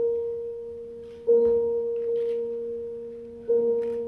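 A bell-like ringing tone in the stage music, struck about every two seconds. It is struck again about a second in and again near the end, and each stroke rings on and slowly fades.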